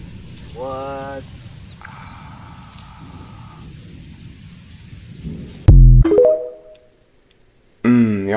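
Soundtrack of a short horror clip: a faint hiss with a brief pitched note and a hazy tone, then about six seconds in a sudden, very loud, deep boom, followed by a short ringing tone that cuts off into silence.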